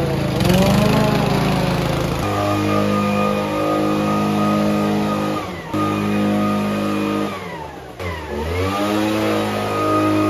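Garden power tools, a lawn mower and a backpack leaf blower, running in short edited clips. The engine pitch rises and falls in the first two seconds, then drops away and climbs back again in the last few seconds as the throttle is let off and opened up.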